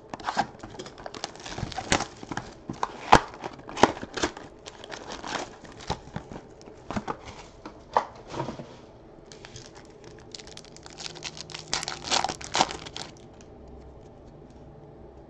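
Trading-card box being opened and its foil card packs handled: a run of crinkling, rustling and tearing with sharp crackles. After a quieter moment there is a second burst of crinkling about 11 to 13 seconds in as a foil pack is ripped open.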